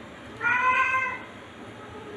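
A cat meows once, a single call of under a second.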